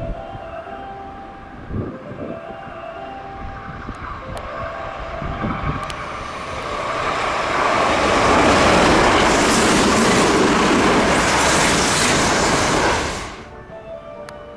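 Sanyo 5000 series electric train approaching and passing the platform at speed: a rushing rumble of wheels and air that builds over several seconds, stays loud, then cuts off suddenly near the end.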